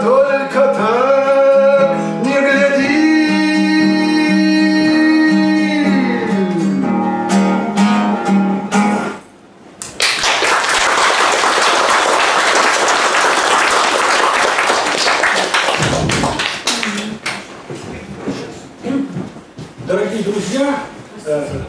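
A man singing to his own acoustic guitar, ending on a long held note that falls away about nine seconds in. Then an audience applauds for several seconds, thinning out near the end.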